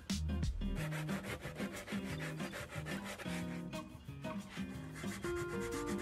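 Sandpaper rubbing along the edge of a plywood board in quick, regular back-and-forth strokes, with background music.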